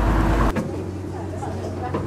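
Vintage coach's engine running with a deep rumble as it pulls round, cut off suddenly about half a second in. Then a quieter background with a low steady hum and faint voices.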